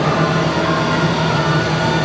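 Machinery running with a steady low hum.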